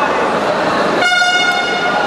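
An electronic timer buzzer sounds one steady, loud tone for about a second, starting about halfway in. Shouting voices from the hall are heard underneath it.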